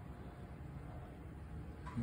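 Quiet background: a faint, steady low hum of room tone with no distinct sound.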